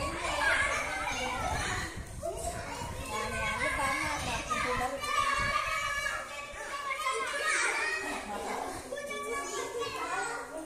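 Several children playing a running game, shouting and laughing excitedly, their voices overlapping without a break.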